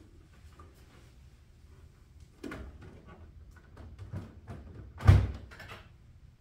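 A plastic Lego building being handled and set down onto baseplates: small clicks and knocks, with a louder thump about five seconds in as it is seated.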